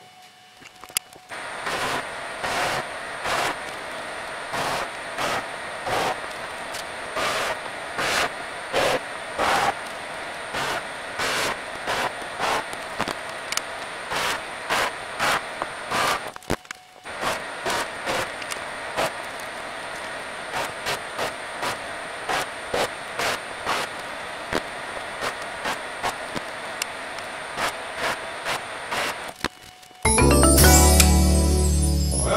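Drill press running steadily, its motor whine constant, while a drill bit is fed again and again into a wooden board, each hole a short swell of cutting noise about one to two times a second. The sound drops out briefly about halfway through and picks up again.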